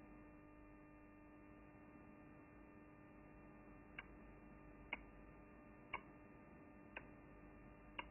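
Near silence with a faint steady electrical hum; about halfway through, short timer ticks begin, one a second, five in all.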